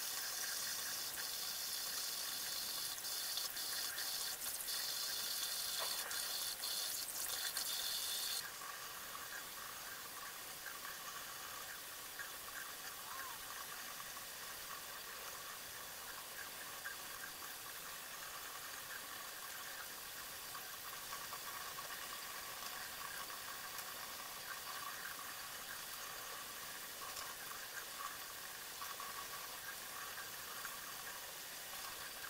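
Bathroom faucet running into a sink while makeup brushes are rinsed under the stream, a steady splashing hiss. A few light clicks come in the first eight seconds, and then the water sound drops suddenly to a softer, steady level.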